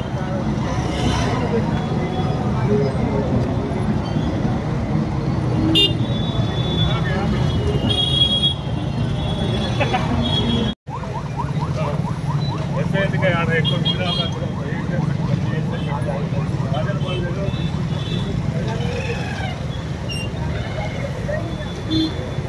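Busy city-street ambience: steady traffic noise with people talking, and several short vehicle-horn toots. The sound cuts out briefly about halfway through.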